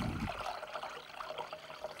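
Cold water being poured from a glass jug into a glass bowl, splashing and trickling, fading gradually toward the end.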